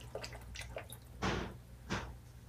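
Water dripping and splashing as a face is rinsed with the hands: small drips, then two brief splashes, one about a second in and one near the end.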